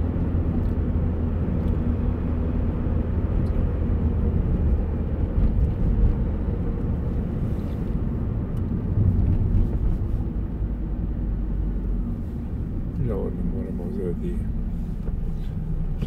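Steady low rumble of a car's engine and tyres heard from inside its cabin while driving, easing off a little in the last few seconds; a voice is heard briefly near the end.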